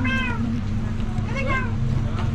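A cat meowing twice: two short calls that rise and fall in pitch, the second about a second and a half in, over a steady low hum.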